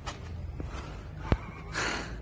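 A sharp, breathy gasp near the end, a startled reaction to a bee. It comes after a single sharp click a little past a second in.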